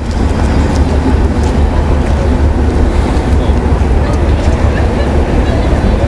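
Wind buffeting the microphone: a loud, steady low rumble with a fainter hiss above it.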